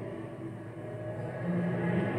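Quiet background of a television soundtrack in a pause between spoken lines: a faint low drone, joined by a low steady tone about three-quarters of the way through.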